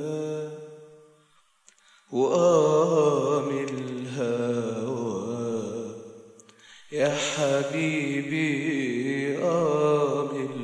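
Male voice singing long wordless phrases with vibrato, in the style of an Arabic song introduction. There are three held phrases with short breaths between them: the first fades out about a second in, the next starts about 2 s in, and the last starts about 7 s in.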